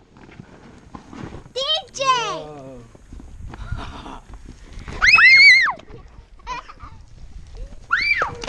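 Excited children's squeals and shrieks: a few short high-pitched cries, a falling one about two seconds in and the loudest, rising then falling, about five seconds in.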